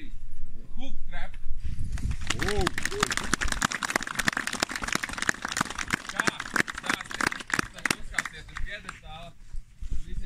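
A small outdoor crowd clapping, with a voice calling out about two seconds in; the clapping thins out near the end.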